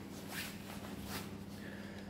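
Faint rustling and shuffling of a person moving about, a few soft scuffs, over a faint steady low hum.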